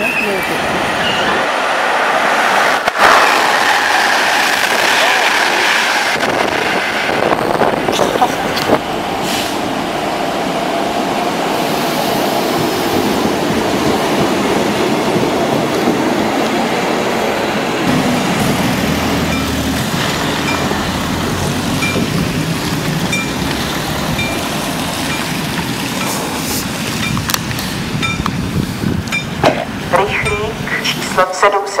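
Passenger train coaches rolling past close by, a steady rumble and rush of wheels on rails. In the last third a faint high ping repeats about once a second.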